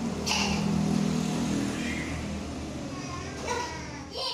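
A motor vehicle's engine running as a steady low hum, strongest in the first two seconds, then fading somewhat.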